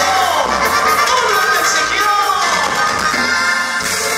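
Loud dance music with a crowd shouting and cheering over it; several long falling cries stand out above the music.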